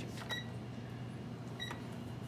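Two short high beeps, just over a second apart, from the keypad of a Davis Vantage Vue weather station console as its buttons are pressed to wake a console that has not come on. A steady low hum runs underneath.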